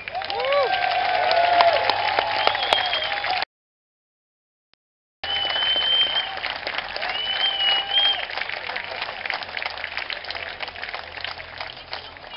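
Crowd applauding, with whoops and a few high whistles over the clapping. The sound cuts out completely for about two seconds a little over three seconds in, then the applause resumes and fades slightly near the end.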